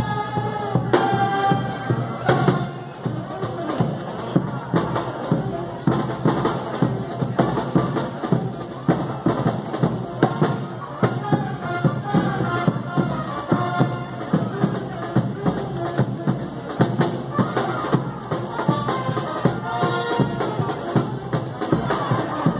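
Live frevo marching band playing: brass over snare and bass drums, with a brisk, regular beat.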